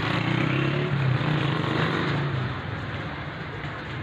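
Street traffic noise with vehicle engines, motorcycles among them, running steadily, easing a little after about two and a half seconds.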